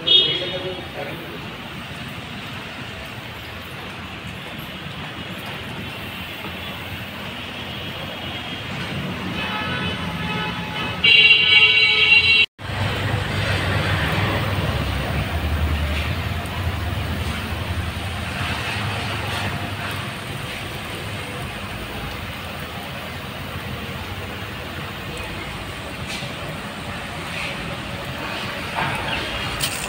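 Street traffic noise, with a vehicle horn honking, loudest for about a second and a half just after eleven seconds in. The sound then cuts out abruptly and comes back as a lower rumble.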